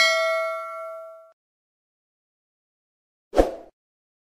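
Notification-bell sound effect: a single bright ding that rings out and fades over just over a second. About three and a half seconds in comes one brief, dull thud.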